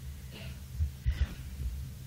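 Steady low electrical hum on an old reel-to-reel lecture tape, with a few soft low thumps about a second in.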